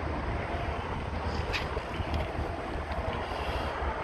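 Steady background noise: a low rumble under an even hiss, with a few faint ticks.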